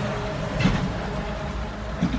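Steady low rumble of street traffic, with one short, louder sound about half a second in.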